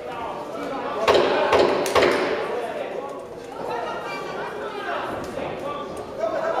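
Boxing gloves landing punches in an exchange: three sharp thuds about a second in, the loudest sounds, echoing in a large hall, with spectators' voices and shouts around them.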